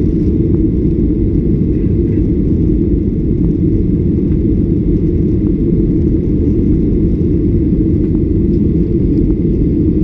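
Steady, loud, deep rumble of an airliner's jet engines and rushing air, heard from inside the passenger cabin.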